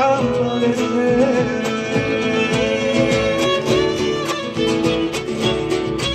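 Live folk music: strummed acoustic guitars and a violin over the beat of a bombo drum.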